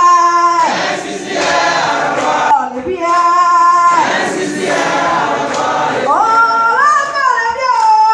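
A woman singing a gospel song through a microphone and PA, holding long notes and sliding between pitches. A congregation sings along with her as a loud group of voices.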